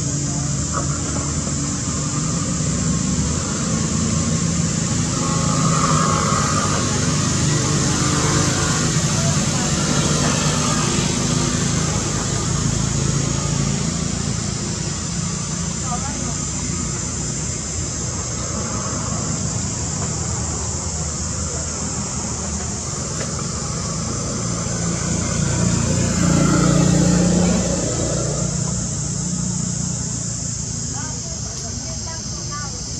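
Outdoor background of people's voices over a steady traffic-like hum and a high steady hiss, swelling briefly near the end.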